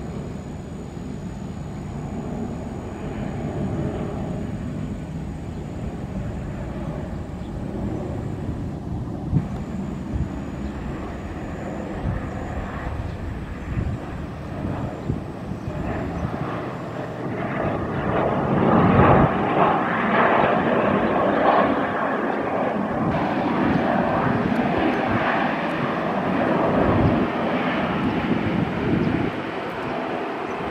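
Jet engines of a Batik Air Boeing 737-800 (CFM56-7B turbofans) as the airliner lands, with a steady rush on final approach. After touchdown, about halfway through, the engine noise grows much louder for several seconds while the jet rolls out along the runway.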